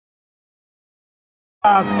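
Dead silence, then about a second and a half in the sound cuts in suddenly with a voice calling out over a steady low hum.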